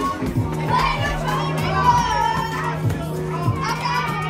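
Karaoke backing track with a steady beat and a held bass line, with several people singing along and a crowd of voices in a large room.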